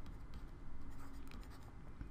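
Faint scratching of a stylus writing on a drawing tablet in quick short strokes, over a low steady hum.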